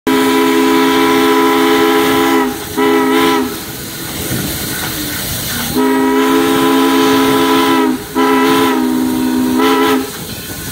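Chime steam whistle of a USATC S160-class 2-8-0 steam locomotive sounding several notes at once in a pattern of blasts: a long blast and a short one, then after a pause a long blast followed by another. This is plausibly a grade-crossing signal. Steam hisses and the locomotive runs between the blasts.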